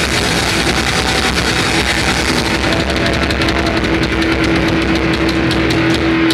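Heavy metal band playing live: distorted electric guitars and drum kit. In the second half one long note is held over rapid, even drum hits.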